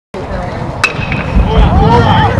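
Sound effects of an animated TV sports intro: a low rumble with a sharp hit just under a second in, then swooping, voice-like sweeps near the end, leading into rock guitar music.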